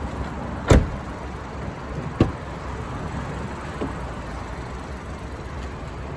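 A BMW 118i's car door shutting with a thud about a second in, then a sharper click of a door latch a second and a half later and a faint tick after that, over steady background noise.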